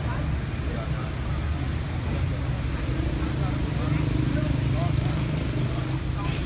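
Street traffic rumble, with a vehicle's low engine tone swelling about three seconds in and easing near the end, and voices faintly over it.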